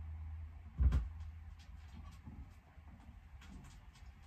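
A turntable stylus is set down on a vinyl record with a single low thump about a second in, followed by faint clicks of the record's surface over a steady low hum.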